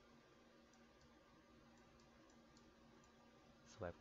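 Near silence: room tone with a low steady hum and a few faint, scattered clicks from a digital pen handwriting an annotation on a slide.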